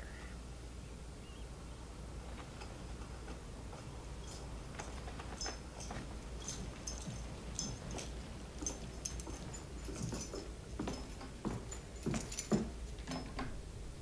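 Faint, scattered clicks, taps and rustles of objects being handled and moved about, with a few short low sounds near the end.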